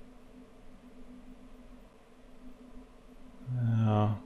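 Quiet room tone with a faint steady hum, then, near the end, a man's drawn-out hesitation sound lasting about half a second.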